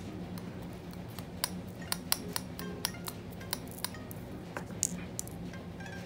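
Small glass vials clinking and ticking as crushed metallic flakes are tipped and tapped from one into the other: a run of light, irregular clicks. Soft background music plays underneath.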